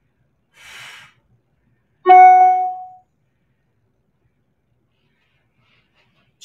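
A soft breath about a second in, then a single bright chime tone that starts sharply about two seconds in and fades out over about a second.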